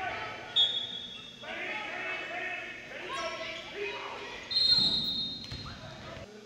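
Referee's whistle blown twice in a gymnasium, each a steady shrill blast just under a second long: one about half a second in and a louder one near the end, over shouting voices.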